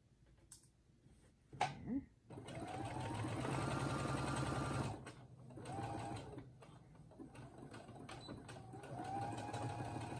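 Brother computerized sewing machine stitching a seam through a tote bag's boxed corner. A steady run of rapid stitching starts about two seconds in and lasts nearly three seconds, followed by two shorter runs, one near six seconds and one near the end.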